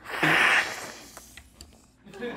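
A man sucking a ball of vanilla ice cream off a large metal spoon: one noisy slurp about half a second long that fades out, followed by a few faint clicks.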